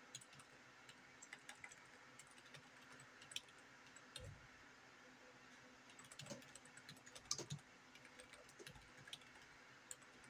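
Faint typing on a computer keyboard: quick key clicks in irregular bursts with short pauses between them.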